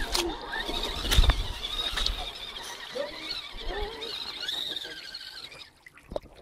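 Radio-controlled scale crawler truck's electric motor whining, its pitch wavering as the truck is driven through a shallow rocky creek. Two knocks stand out, at the start and about a second in.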